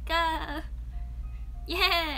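A young woman's high-pitched voice making two drawn-out, wavering vocal sounds, one at the start and one near the end, over a steady low hum.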